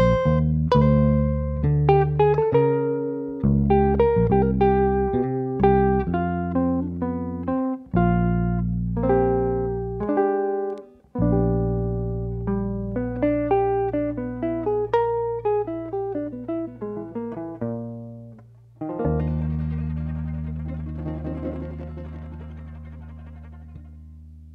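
Jazz duo of archtop electric guitar and electric bass guitar playing a melody line over plucked bass notes. About 19 seconds in they strike a final chord together and let it ring, fading out.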